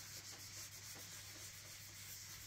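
Faint rubbing of a cloth applicator pad wiping oil finish across a spalted beech board, over a low steady hum.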